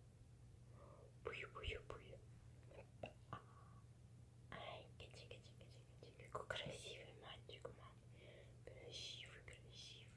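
Faint whispering: a person's soft, breathy words in short scattered phrases, very quiet overall.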